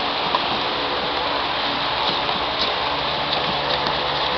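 Steady, hiss-like room noise of a busy training hall, with a few faint taps.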